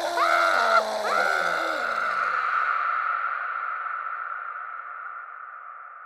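A man's voice crying out and laughing, drawn out by a heavy echo effect into a lingering ringing tone that slowly fades away.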